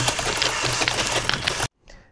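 Playback of a recorded audio clip from the soloed Audacity track: dense, rattling noise with a pulsing low undertone, cut off suddenly near the end as playback is stopped.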